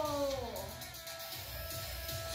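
A goat kid bleating once, the call dipping and dying away about half a second in, over film background music with a steady beat.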